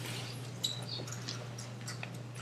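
A steady low electrical hum with a few faint clicks and a short, high squeak a little over half a second in: small handling noises at a lecture table.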